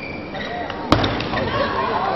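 Table tennis rally ending: a few high shoe squeaks near the start, then one sharp, loud ball strike about halfway through. Crowd voices and shouts rise after it as the point ends.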